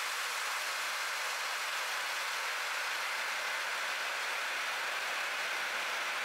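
Steady, even hiss of water rushing through the pressurised pipework and inlet valve of a small inline hydro turbine, with no rise, fall or knocks.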